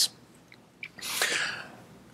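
A man's audible breath in, a hissing intake lasting just under a second about a second in, preceded by a small mouth click.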